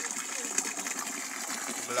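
Water running steadily into a fish pond as it is being filled, a continuous splashing hiss.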